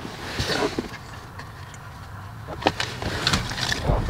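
Handling noise from pressing an aluminium pedal cover with a rubber back onto a car's gas pedal: a rustle about half a second in, then a few sharp light clicks near the end, over a low steady background rumble.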